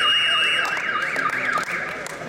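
Electronic timer signal sounding the end of a wrestling bout: a loud warbling tone sweeping up and down about three times a second, stopping shortly before the end.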